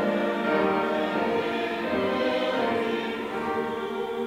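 Small mixed church choir singing slow, sustained chords.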